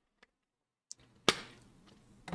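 A plastic drinking bottle handled and set down on a desk: a few faint clicks, then one sharp knock about a second and a quarter in, with a low hum in the background after it.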